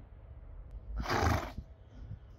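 A horse gives one short, harsh, breathy call about a second in, lasting about half a second.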